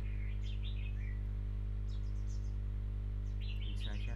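A steady low hum, with birds chirping faintly in the background in short bursts near the start, just after two seconds and near the end.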